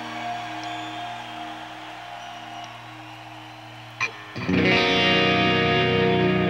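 Unaccompanied distorted electric guitar played live through effects: held notes ring and slowly fade, then after a sharp pick attack about four seconds in, a loud distorted note swells up and sustains.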